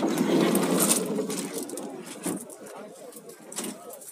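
Several people talking at once in the background, voices overlapping and loudest in the first second and a half, then quieter talk.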